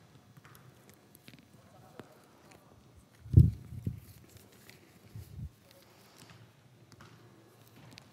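Quiet background of a soccer drill in a large indoor hall, with faint scattered taps, a loud low thump about three and a half seconds in and a softer one about five seconds in.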